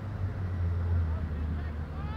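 A steady low rumble under faint distant voices.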